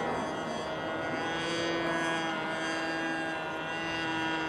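Tower Hobbies .75 two-stroke glow engine of a Great Planes Stick 60 model airplane running in flight, a steady buzzing note.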